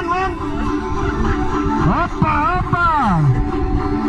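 Background music with steady held notes. At the very start, and again about two seconds in, a voice calls out in a high, warbling, wavering line for about a second and a half, then slides down.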